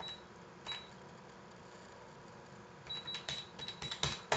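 Faint key presses on an electronic calculator, each with a short high beep: one at the start, one just under a second in, then a quick run of about eight presses in the last second as a sum is entered.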